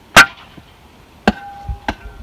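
Steel shovel blade striking hard, stony dirt three times: a sharp loudest hit just after the start, then two more in the second half that ring briefly with a metallic tone.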